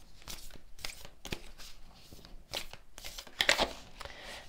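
A deck of oracle cards being shuffled and a card drawn: irregular soft flicks, slides and rustles of card stock, busiest about three and a half seconds in.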